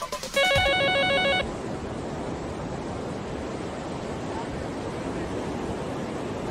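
An electronic telephone ringer warbles loudly for about a second. Then a steady rushing noise from the floodwater video takes over: a swollen, overflowing river.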